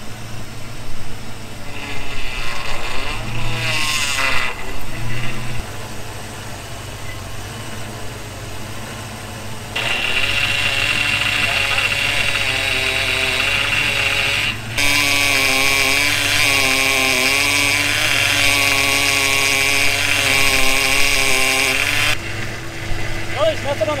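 Ford Mustang engine idling while the power steering pump whines with a wavering, pitched tone. The whine is loudest for a long stretch in the second half, breaking off briefly once. The system is leaking and low on fluid and has just been dosed with power steering stop leak.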